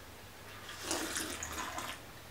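A person drinking rum and cola from a glass: a wet, fizzy slurping sound that starts just under a second in.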